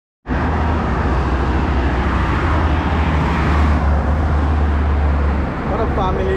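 Road traffic on a multi-lane road, cars passing as a steady wash of noise with a strong low rumble that eases about five and a half seconds in.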